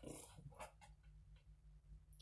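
Near silence: room tone with a few faint soft clicks in the first second.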